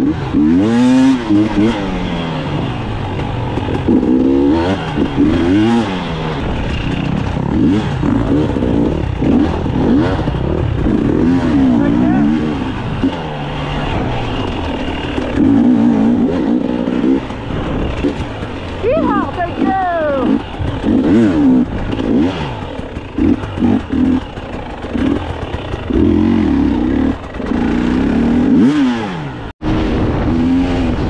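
Dirt bike engine revving up and dropping back over and over while riding a tight trail, with the pitch climbing and falling through the gears.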